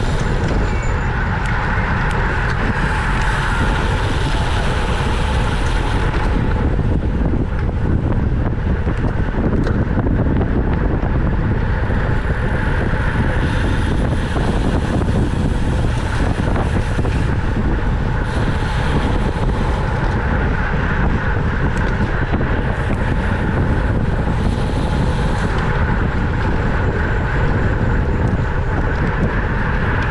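Wind buffeting a bicycle-mounted camera's microphone at racing speed, about 25 to 28 mph. The rushing noise is loud and steady, with a constant low rumble, and its higher hiss swells and fades every few seconds.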